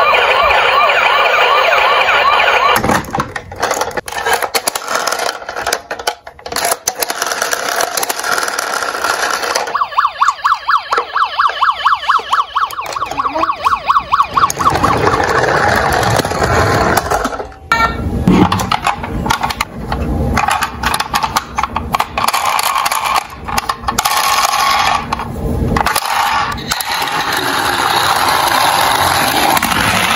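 Electronic siren sounds from battery-powered toy emergency vehicles, several different siren patterns one after another, including a fast pulsing siren of about four beats a second in the middle.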